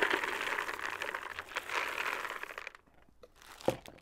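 Dry compressed straw pellets pouring from a plastic bowl into a plastic plant pot: a rattling patter that thins out and stops about two and a half seconds in. A single click near the end.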